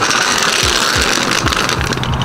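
Mechanic's creeper rolling on small caster wheels over the shop mat and concrete: a steady rolling rattle.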